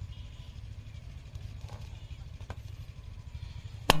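A long latex balloon, being blown up by mouth, bursts with a single sharp bang near the end, over a steady low rumble.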